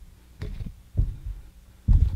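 Three dull low thumps of handling noise on a handheld microphone, about half a second, one second and two seconds in.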